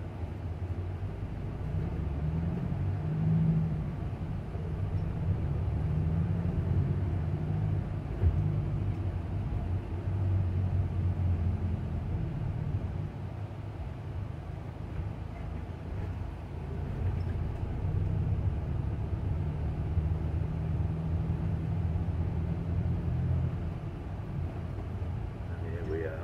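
Engine and road noise heard inside a moving passenger van's cabin: a steady low drone that swells and eases with the van's speed.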